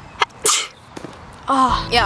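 A young woman's short, sharp, breathy outburst about half a second in, just after a small click. She starts talking near the end.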